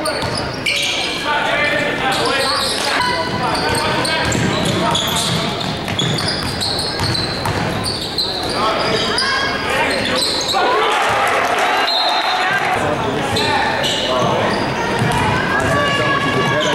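Basketball dribbled on a hardwood gym floor during game play, with players and spectators calling out over it, echoing in a large gym.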